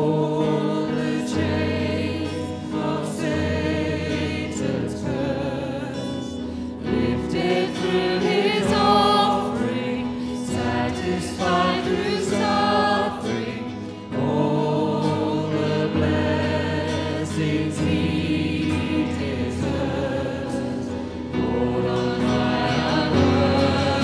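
Live church worship song: a band with keyboard and electric guitar playing while many voices sing, led by a woman at the microphone. The music dips briefly about two-thirds of the way through, then carries on.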